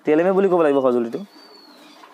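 A man's voice speaking a drawn-out, wavering phrase for about the first second, then only low background noise.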